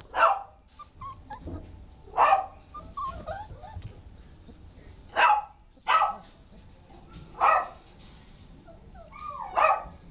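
Dogs barking: about six short, separate barks, a second or two apart.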